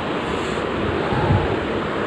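A steady rushing noise with no clear tone or rhythm.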